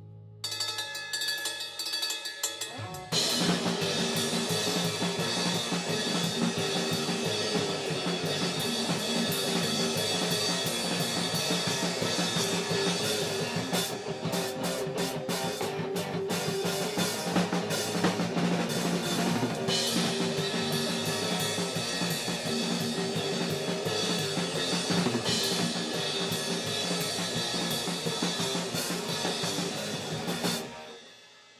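A band playing a song live on a drum kit with bass drum and snare, the full band coming in about three seconds in after a sparse opening.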